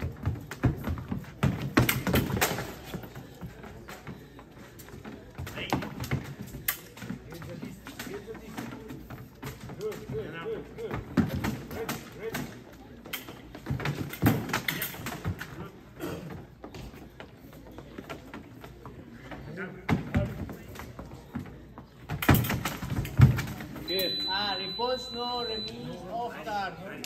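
Scattered thumps and taps of fencers' footwork and blade contact on a fencing piste over background chatter. About two seconds before the end a steady high electronic tone from the fencing scoring machine comes on, the signal that a touch has registered.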